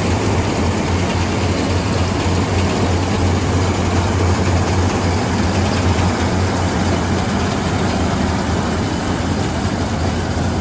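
SANT combine harvester running while it cuts standing wheat. A steady engine drone with a strong low hum lies under a broad rushing noise from the header and threshing works.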